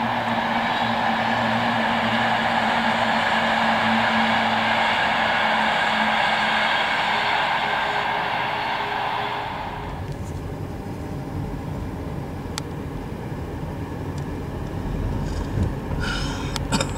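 An electric passenger train running past: steady wheel-on-rail noise with a faint motor whine that changes pitch partway through, cutting off about ten seconds in. A quieter low rumble follows, with a few sharp clicks near the end.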